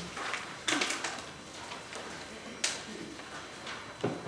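Hushed room tone from a seated audience: low, steady background noise with a few scattered small clicks and rustles, about three of them.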